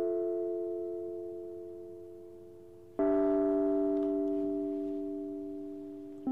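Slow background music on a keyboard: a held chord fading away, then a new chord struck about three seconds in that also slowly fades.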